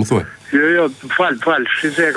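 Speech only: a caller's voice over a telephone line, sounding thin and narrow.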